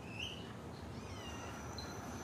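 A kitten meowing faintly behind a closed apartment door, crying to be let out.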